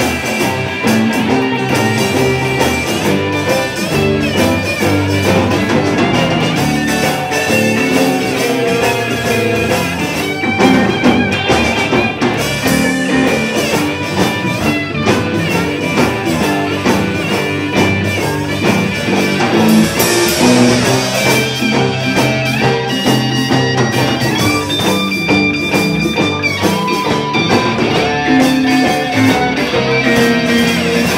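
Live blues band playing an instrumental break with no vocals: drum kit, electric bass, electric guitars and lap steel guitar, with held and sliding high notes through much of the second half.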